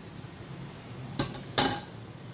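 A stainless steel saucepan set down on the stovetop with two metal clanks about a second in, the second one louder and ringing briefly.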